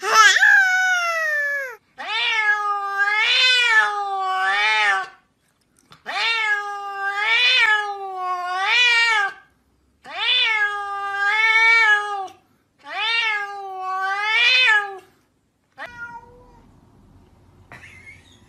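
Domestic cats meowing in five long, drawn-out calls of one to three seconds each with short gaps between, the pitch wavering up and down; the first call falls in pitch. Much quieter for the last couple of seconds.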